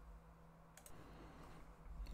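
Near silence: room tone with a faint steady low hum, and a faint double click a little under a second in, as of a computer mouse advancing the slide.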